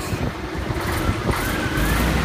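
Diesel truck engine running, with a whine that rises in pitch from about halfway in as the engine speeds up.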